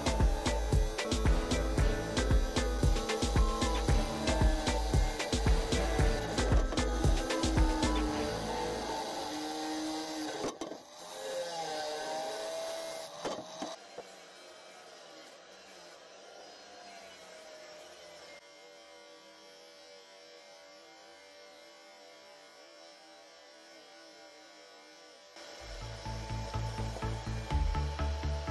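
Background music with a steady beat. It drops away about a third of the way in, leaving a long quiet passage, and comes back near the end.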